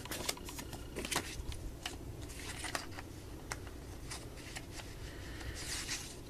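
Paper CD booklet pages being flipped and handled, a dry papery rustling with scattered light clicks and flicks.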